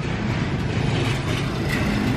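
A motorcycle passing on the street, a steady run of engine and road noise.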